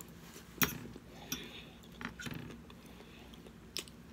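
A person chewing a mouthful of romaine lettuce salad, with a few short crisp clicks and crunches, the sharpest about half a second in.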